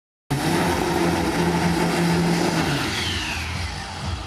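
Drag-racing car engine running hard at a steady pitch, fading away after about two and a half seconds, with a brief falling whine near the end.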